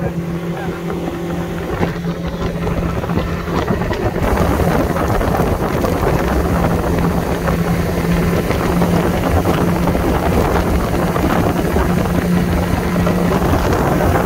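Yamaha 50 hp four-stroke outboard motor running steadily at speed, a constant hum, with water rushing past the hull. Wind buffets the microphone, growing stronger about four seconds in.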